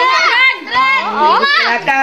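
Children shouting and calling out in high, excited voices, several overlapping, with a sharp upward-sliding call about a second and a half in.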